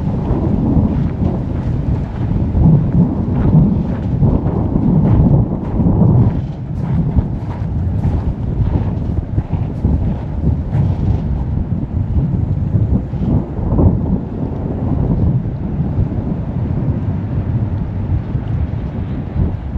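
Wind buffeting the microphone at the riverside: a loud, uneven low rumble that swells and eases, with light crackles over the first ten seconds or so.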